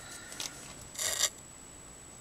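A brief scratchy rub about a second in, with a fainter one shortly before it, from an alcohol marker being handled and worked on cardstock.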